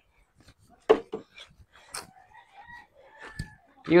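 A few light knocks and clicks from hands working on a small motorcycle, the strongest about a second in, with faint distant calls in the background.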